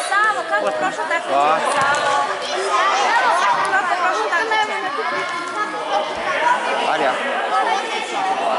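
Chatter of many voices talking and calling over one another, with no single voice standing out, in a large indoor sports hall.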